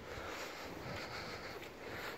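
Faint, steady outdoor background noise with no distinct sound in it.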